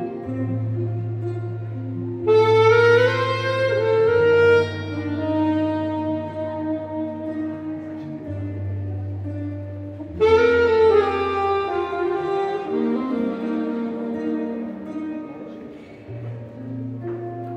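Alto saxophone playing a slow melody live over acoustic guitar accompaniment, with two louder, brighter phrases: one about two seconds in and one about ten seconds in.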